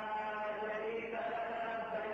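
Sustained vocal chant, voices held on long steady notes without words breaking in.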